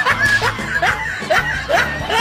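A person laughing in short repeated bursts, about two a second, over background music.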